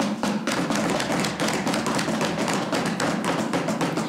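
Members thumping their hands on wooden desks: a dense, irregular patter of knocks that is the legislature's form of applause, showing approval of the line just spoken.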